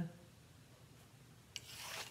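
A quiet stretch, then about one and a half seconds in a faint click and a short, soft rubbing scrape of mat board being worked on a straight-edge mat cutter.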